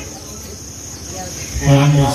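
A pause in a man's amplified speech, with a steady high-pitched drone underneath. His voice starts again through the microphone about one and a half seconds in.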